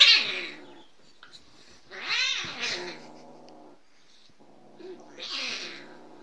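Cat hissing and yowling at a dog pestering it: a sharp, loud hiss at the very start, then two long, wavering yowls.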